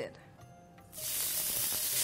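Grated carrots dropped into hot ghee in a wok, starting to sizzle and fry: a loud, steady hiss that comes in suddenly about a second in.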